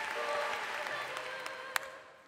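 Audience applauding, the clapping fading toward the end, with faint held musical notes underneath. One sharp click near the end.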